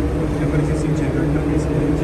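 Steady low drone of running machinery aboard ship, a constant hum with several held low tones and no change in speed.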